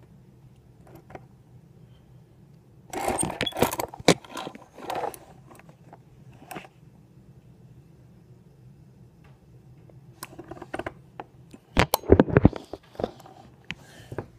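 Handcuffs jangling in short bursts with knocks from handling, loudest about three seconds in and again around twelve seconds in, over a faint steady hum.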